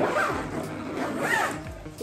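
Zipper on a fabric cat carrier backpack being pulled, a rasping run of noise at the start and again just past the middle, with background music underneath.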